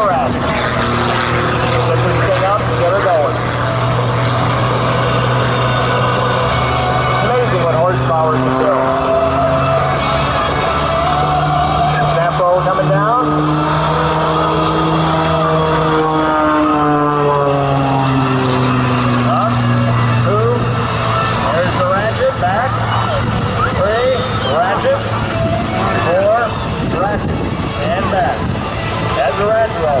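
Single-engine aerobatic plane's piston engine and propeller droning overhead. The pitch holds steady, then rises and falls back about halfway through as the plane manoeuvres, and fades near the end.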